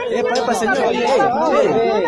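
Several voices talking loudly over one another at once in a heated argument, with no single voice clear.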